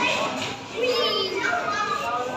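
Children's high-pitched voices talking and calling out, with no break across the stretch.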